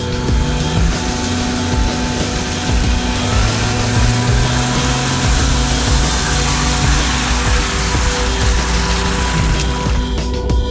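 Background music over the engine of a Jeep Cherokee as the mud-covered SUV drives through a boggy clearing.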